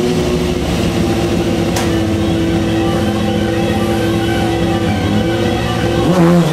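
Motorcycle engine revved up and held at steady high revs for about five seconds, its note shifting slightly near the end.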